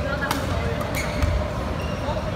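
Badminton racket strikes on a shuttlecock during a rally in a large sports hall: two sharp smacks, the first just after the start and the second under a second later, with background voices in the hall.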